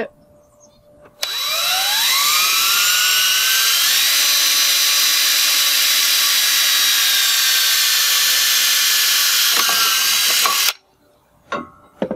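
Cordless drill spinning up with a rising whine about a second in, then running steadily as it bores a 1/8-inch hole through the aluminum rail, and stopping suddenly near the end.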